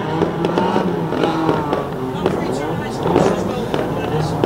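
Banger race cars' engines running together in a steady drone, with scattered bangs of cars hitting one another.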